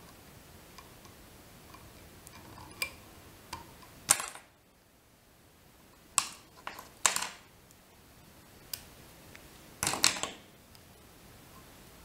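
A handful of short, sharp clicks and taps from small metal fly-tying tools being handled at the vise as the thread is whip-finished at the head of the fly. The loudest clicks come about four seconds in and again near ten seconds.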